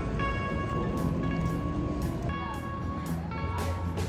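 Background music: sustained electronic chords over a low bass, with light percussion coming in about halfway through.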